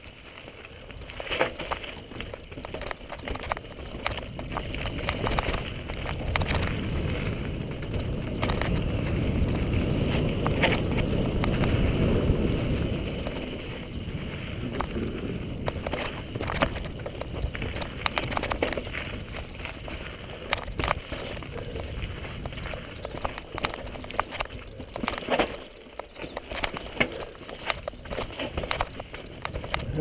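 Mountain bike descending a rocky dirt trail: steady tyre and rushing noise with frequent sharp knocks and rattles as the bike runs over rocks and drops. The noise swells for a stretch around the middle.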